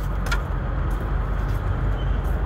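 Heavy truck diesel engine idling with a steady low rumble.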